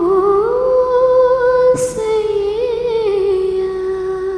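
A woman's solo unaccompanied voice holding long closing notes of a song, stepping up to a higher note about half a second in and dropping back with a small wavering turn past the middle, growing gradually softer toward the end. A short hiss cuts in just before two seconds.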